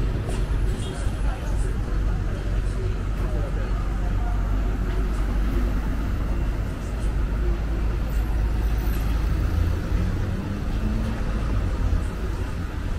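City street background: a steady low rumble of traffic with indistinct voices.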